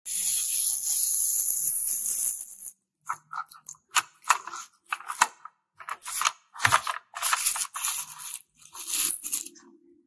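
Plastic toy dump truck being handled and rolled over artificial grass: a steady hiss for the first two and a half seconds, then a string of short, irregular scrapes, crunches and plastic clatters that stop about half a second before the end.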